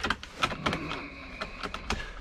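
A round wooden glass-display cabinet in a motorhome being turned by hand: about half a dozen light clicks and knocks as it moves, with the drinking glasses inside it.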